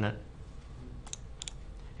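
A few faint, sharp computer-mouse clicks, three of them close together about a second in, over a low steady room hum.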